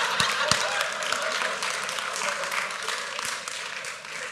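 A lecture-hall audience laughing and clapping, loudest at the start and dying away.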